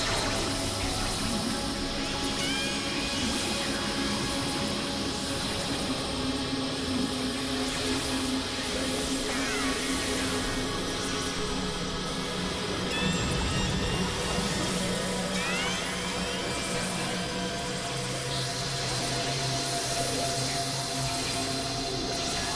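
Experimental electronic drone music: a dense noisy wash with several sustained synthesizer tones held underneath, and a few short pitch glides high up. Near the end a new high tone and a low tone come in.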